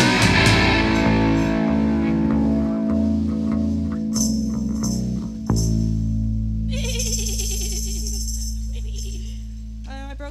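The band's last chord on electric guitar, bass and drums rings out and fades, and is cut off by a sharp thump about halfway through, leaving a steady low amplifier hum. Near the end a band member gives a wavering, falling imitation of a horse whinny, the whinny that ends the song.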